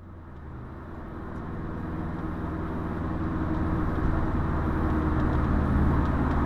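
Car engine and road noise heard from inside the cabin while driving: a steady low drone that grows gradually louder.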